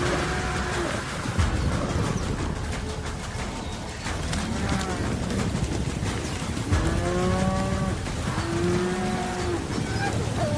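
Bison calling in several drawn-out, slightly arching bellows, the longest two in the last few seconds. A steady low rumble with a couple of sharp thumps runs underneath.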